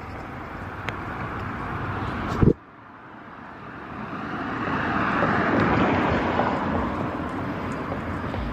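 Street traffic noise with a car passing: a steady rush that cuts off with a knock about two and a half seconds in, then swells to a peak around six seconds and eases off slightly.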